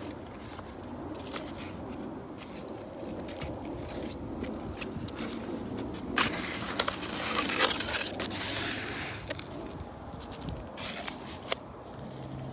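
Hands rustling and scraping through leaves and mulch while picking strawberries, with scattered light clicks and a louder stretch of rustling in the middle.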